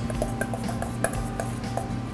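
A metal spoon stirring diced fruit in a stainless steel mixing bowl, with soft clinks of metal on metal, over background music.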